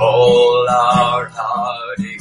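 Worship song: a voice holds a long sung note with a slight waver over strummed acoustic guitar.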